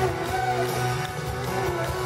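Live band music in an instrumental passage, with a violin being bowed over the band.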